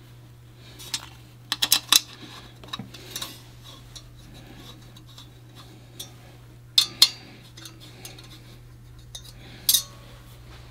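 Small steel parts and a hand tool clicking and clinking against a cast-iron engine block as the lifter hold-down tray of a roller cam retrofit kit is fastened down. The clicks come in scattered short clusters, the loudest about seven seconds in and again near the end, over a steady low hum.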